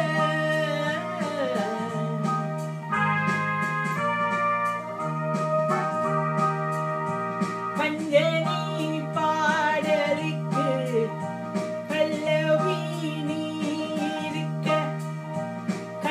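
Electronic keyboard playing a melody in sustained notes over a repeating bass accompaniment, with a voice singing over it.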